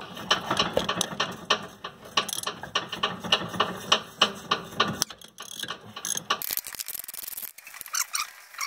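Hand socket ratchet clicking as it backs out a 14 mm brake caliper bolt, in repeated runs of sharp clicks. Near the end comes a quicker, denser run of clicking.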